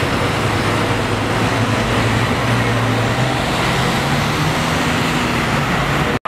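Street traffic noise: a steady rumble of vehicles with a low engine hum.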